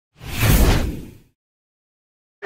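A single whoosh sound effect for an animated title graphic, swelling quickly with a deep low end and fading away a little over a second in.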